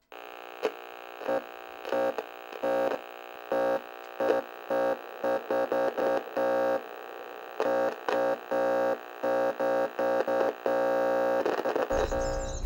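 Synthesized electronic music or sound effect: a steady held chord of tones, with short louder pulses coming at irregular intervals.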